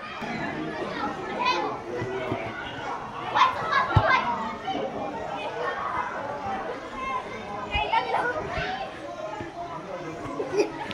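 Girls' and women's voices shouting and calling out over one another during play, with a background of spectators' chatter. A couple of short dull thuds come through, about four seconds in and again near eight seconds.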